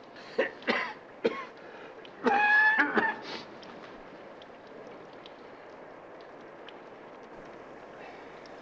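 An old man coughing: three short coughs in the first second and a half, then a louder, longer, wheezy pitched cough about two seconds in.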